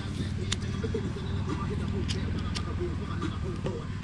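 Indistinct, muffled voice sounds over a steady low hum, with a few faint clicks.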